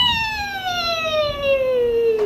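A woman's long playful "wheee" as she spins around, starting high and falling steadily in pitch for about two and a half seconds.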